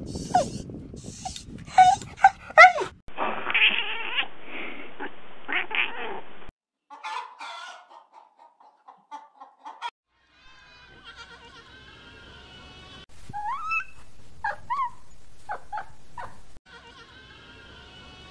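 A run of short animal clips with abrupt cuts between them. Puppies yelp and whine in the first few seconds, and goats bleat in a pen in the second half.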